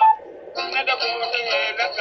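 Recorded music with a singing voice; it drops away briefly just after the start, then carries on.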